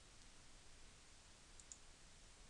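Near silence with a steady faint hiss, and a faint quick double click of a computer mouse button about one and a half seconds in.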